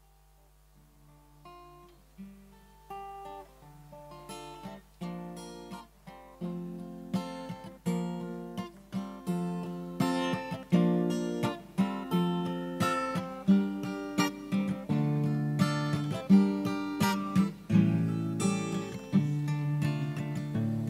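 Acoustic guitar with a capo playing an instrumental introduction to a song, note by note and chord by chord. It starts softly about a second in and grows steadily louder.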